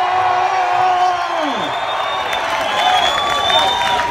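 Large crowd cheering and applauding, with several voices holding long shouts over the clapping.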